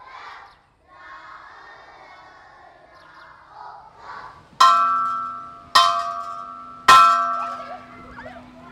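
A steel vehicle wheel rim hung as a bell, struck three times about a second apart, each blow ringing out and dying away.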